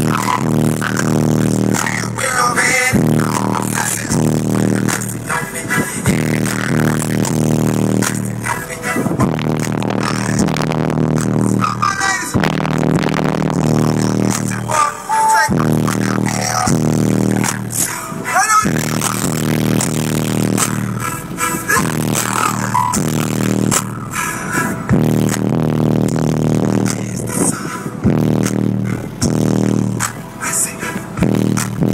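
Loud music with a heavy beat and vocals, played through a truck's aftermarket subwoofers and heard from inside the cab.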